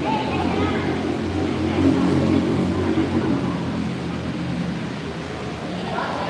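Indistinct chatter of a group of people over a steady low hum.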